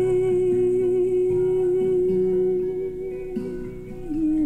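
A woman's voice holds one long, steady note over a capoed acoustic guitar whose lower picked notes change underneath. The held note fades near the end.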